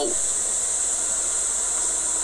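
A steady, unchanging hiss, brightest and sharpest in the high treble, with nothing else standing out over it.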